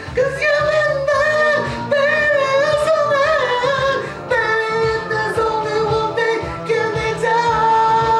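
A high singing voice holding long, wavering notes without clear words, over an R&B backing track with a steady bass and drum beat.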